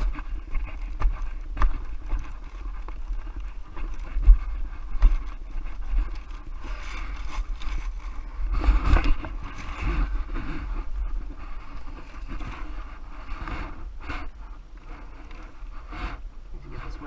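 Plastic tarp rustling and crinkling as it is pulled and folded by hand, with irregular scrapes and sharp handling knocks over a steady low rumble.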